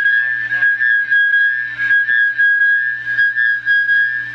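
Audio feedback through a laptop's speakers, a steady high whistle at one pitch, caused by the capture software playing back a live microphone that picks itself up again. Faint echoes of a voice repeat in the first second.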